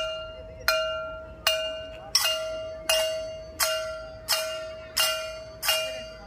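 A metal bell or gong struck in a steady, even rhythm, about one and a half strikes a second, each note ringing on until the next.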